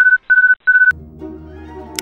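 Three short electronic beeps at one steady high pitch, evenly spaced within the first second, followed by soft sustained bowed-string music and a brief click near the end.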